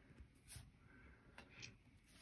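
Near silence, with a couple of faint, soft handling sounds as a trading card is moved and set down on a wooden table.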